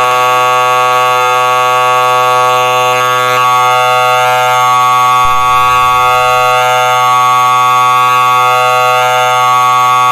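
Game-show buzzer held as one long, loud, steady buzz, sounding a wrong answer.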